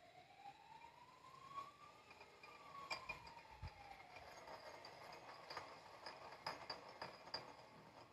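Faint siren wail played through a phone's speaker, one slow rise over about two seconds and then a longer fall, with a few light clicks.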